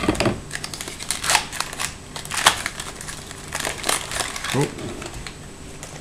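Foil wrapper of a just-cut trading card pack crinkling and crackling irregularly as it is handled and the cards are slid out.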